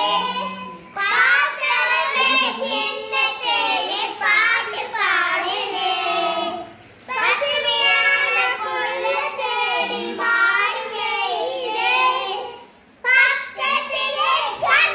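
Young children singing a song together without instruments. The singing comes in phrases, with short breaks about a second in, around seven seconds in, and shortly before the end.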